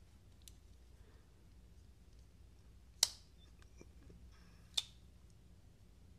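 A few light clicks and taps as a closed folding knife with steel bolsters is handled and laid on a plastic digital kitchen scale: one sharp click about halfway through and a second almost two seconds later, with faint ticks between.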